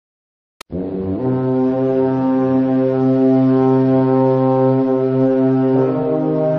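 A click, then a loud, low, steady droning note rich in overtones, held without a break for about five seconds like a foghorn blast; it shifts to another note right at the end, as in the opening of a music track.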